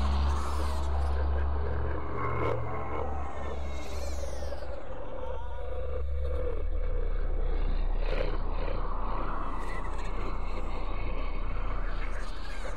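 Horror-film sound design: a deep, steady low drone under a dense, rough noise layer, with sweeping high swishes about four seconds in and again near the end.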